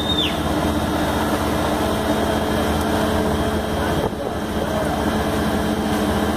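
Faun Rotopress garbage truck standing and running, its engine and continuously spinning drum making a steady mechanical drone. A short high squeal drops away at the very start.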